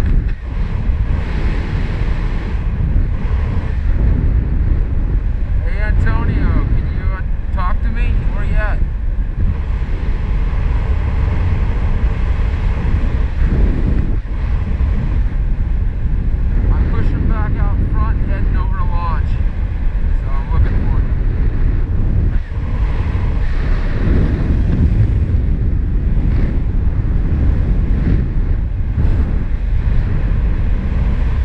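Wind rushing over a GoPro microphone on a paraglider in flight: a loud, steady rush of airflow. Twice, for a few seconds at a time, a faint wavering pitched sound comes through the wind.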